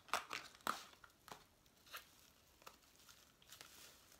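A cardboard eyeshadow-palette box being opened and the palette pulled out, with scratchy rustling and crinkling of the packaging. A few sharp scrapes come in the first second, then quieter rustles.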